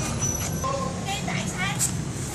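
A steady low rumble of road traffic, with voices in the background.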